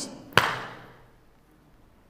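A single sharp smack about a third of a second in, struck for emphasis, with a short echo in the room.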